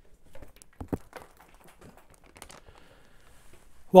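Popcorn being tossed over an open snack bag: scattered light ticks of popcorn landing on the table and bag, faint crinkling of the bag, and a couple of soft knocks about a second in.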